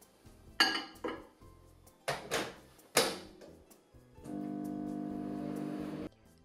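A few knocks as a glass bowl is set into a microwave and the door is shut, then the microwave oven starts up with a steady electrical hum about four seconds in.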